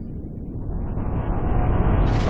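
A deep rumbling sound effect that swells steadily louder, building toward a sudden burst.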